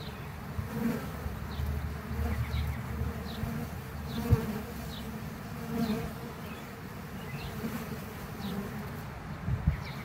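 Honey bees buzzing at a hive entrance, single bees droning past the microphone in swells that rise and fade every second or two. A brief sharp knock comes a little after four seconds in.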